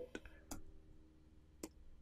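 A few faint, sharp clicks from the computer as the code is run again, with near silence between them.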